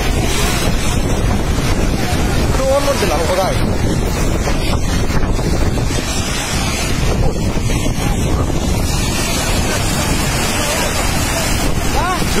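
Steady loud rushing of a landslide of mud and water surging down into the mine pit, mixed with wind buffeting the phone's microphone. A short wavering shout rises over it about three seconds in.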